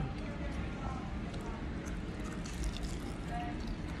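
Steady restaurant background noise with faint voices, with small wet mouth sounds and lip smacks of someone eating chicken wings.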